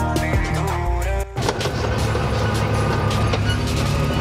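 Background music, which about a second and a half in gives way to the steady roar of a Yamaha YXZ1000R side-by-side on the move: its three-cylinder engine and wind noise in the open cab, with faint music still underneath.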